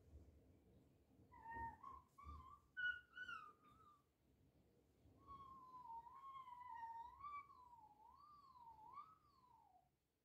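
A faint, high-pitched vocal sound: a few short rising and falling calls, then one long call that wavers up and down in pitch, swinging more widely near the end.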